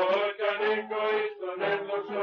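Male voice chanting a slow, wavering melody over a steady held drone note.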